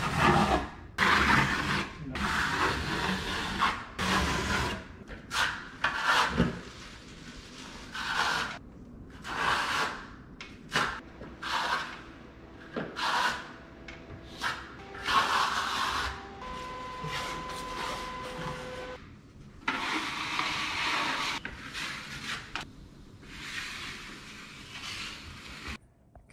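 Trowel scraping and spreading a cement-based mix across a wall in repeated irregular strokes, each a rasping scrape. A faint steady tone sounds for a few seconds past the middle.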